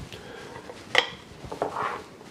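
Kitchen utensils being handled on a stone counter: one sharp clack about a second in, then a few soft knocks and a brief rubbing scrape near the end as cilantro paste is worked in a glass mason jar.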